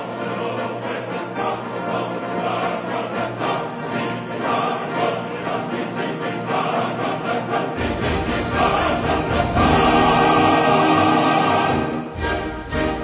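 Choral music: voices singing over instrumental accompaniment. A deep bass comes in about eight seconds in, and the music swells louder near the end.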